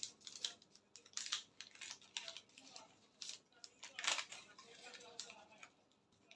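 Brown paper pattern rustling and crinkling in short bursts as it is folded and pressed flat by hand to close a bust dart.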